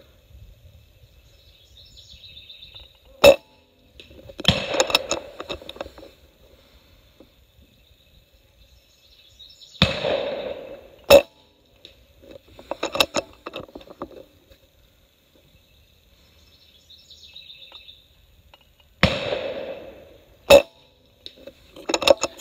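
Umarex Gauntlet PCP air rifle being shot about three times, each sharp report among short mechanical clicks from working the bolt between shots.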